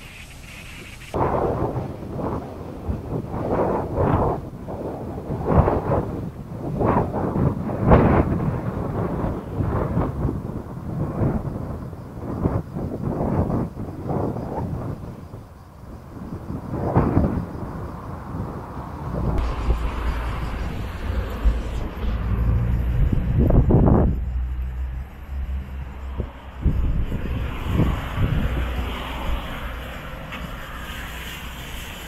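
Wind buffeting an action camera's microphone in irregular gusts. The sound changes abruptly about a second in and again about two-thirds through, the last part carrying a heavier low rumble.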